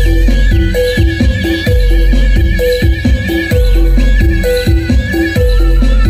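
Loud music with a heavy, steady bass beat and a short melody repeating over it, with high swooping notes that rise and fall above.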